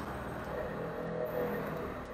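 A low, steady background hum with no sharp sounds.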